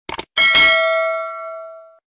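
Quick mouse-click sound effects, then a notification bell chime struck once about half a second in, ringing on and fading away over the next second and a half.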